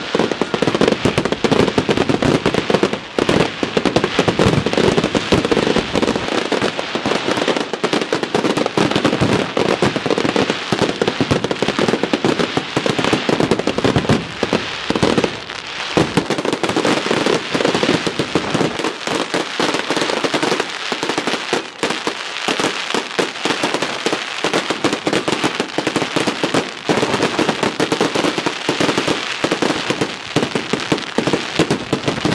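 Fireworks display: many aerial shells bursting in rapid, near-continuous succession, with brief lulls about halfway and two-thirds of the way through.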